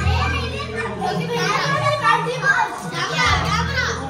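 Several children talking and calling out over one another in high voices.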